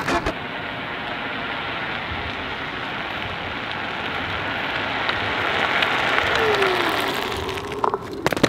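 Onewheel electric board rolling over asphalt toward the camera, a steady rushing tyre noise that grows louder as it approaches, with a short falling whine about six seconds in.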